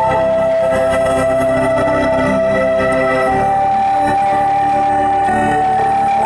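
A bass-boosted song played through a 35-watt, 8-ohm woofer in a box: a melody of long held notes that step in pitch over dense, heavy bass, at a steady level.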